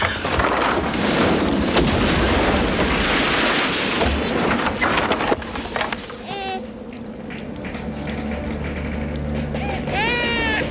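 Storm sound effects: a loud rushing wind noise with crashes for about five seconds, which cuts off sharply. It is followed by a brief cry and low, steady sustained music.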